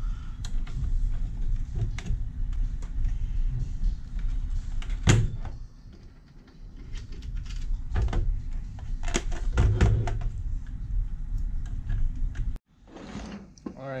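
Hands fitting plastic Nerf Kronos blaster parts and pump-kit plates together: rubbing and handling noise with several sharp clicks and knocks, the loudest about five seconds in. The sound cuts off abruptly near the end.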